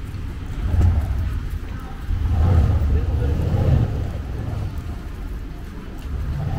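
Busy city street ambience: a low rumble that swells briefly about a second in and again for about two seconds from the two-second mark, with passersby talking.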